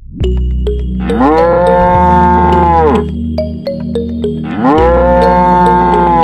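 Two long cow moos, each about two seconds, rising at the start, holding steady and falling at the end, with scattered clicks between them over a steady low background tone.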